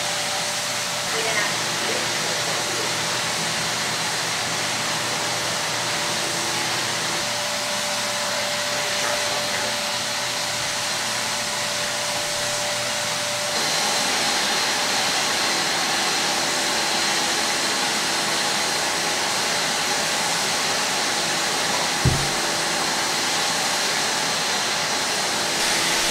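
Airbrush spray-tanning turbine blowing air through its hose and spray gun: a steady hiss with a faint hum. It shifts in tone and grows a little louder about halfway through, and there is a single low thump about three-quarters of the way in.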